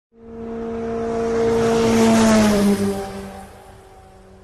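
A motor vehicle passing by: its engine note swells, drops slightly in pitch as it goes past about two and a half seconds in, then fades away.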